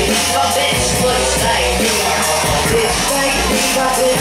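Live hip hop: a backing beat with a steady heavy bass played loud over the PA, with a woman's voice on the microphone over it.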